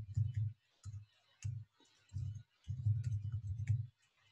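Typing on a computer keyboard, keys clicking in short irregular runs with pauses between them, the longest run near the end, while a password is entered.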